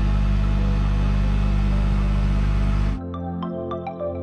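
Boat travel lift's engine running steadily with a low drone as it carries a sailboat on its slings. About three seconds in it cuts off suddenly to background music of ringing, mallet-like notes.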